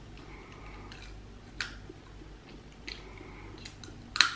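Clear plastic dental aligner (gutieră) being pressed back onto the lower teeth by hand, with a few faint clicks as it snaps into place.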